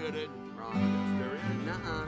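Acoustic guitar film-score music with held notes, under a man's short spoken "uh uh" at the start and brief dialogue.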